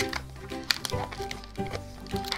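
Background music with steady held notes, and a few short rubbery squeaks and creaks from a latex modelling balloon being twisted and tied by hand.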